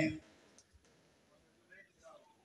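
A man's voice through a microphone ends a word just after the start, then a near-silent pause broken only by a couple of faint clicks.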